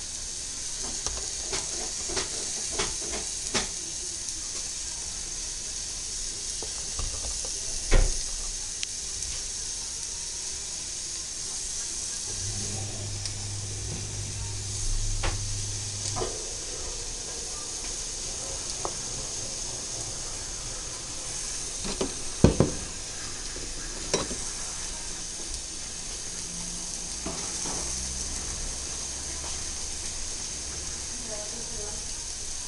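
Kitchen utensils at work on food preparation: scattered clicks and knocks over a steady background hiss, the loudest knocks about eight seconds in and again about twenty-two seconds in.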